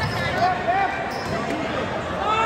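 A basketball being dribbled on an indoor gym court, with people's voices around it.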